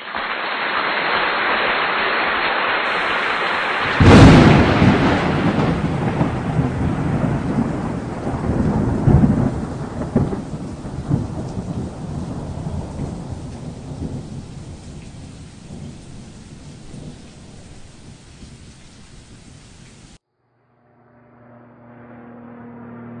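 Thunderstorm sound: steady rain hiss, then a loud thunderclap about four seconds in, followed by rolling rumbles that fade away before cutting off suddenly near the end.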